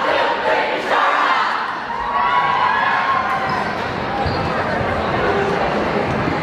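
Crowd of students cheering and calling out in a gymnasium, with a few thumps.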